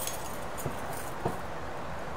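Steady low room noise with two faint, light clicks about half a second apart, from small hand tools being handled on the workbench.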